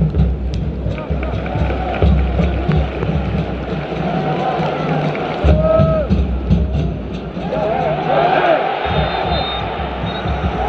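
Football stadium crowd ambience from the stands: voices and music mixed with a heavy low rumble.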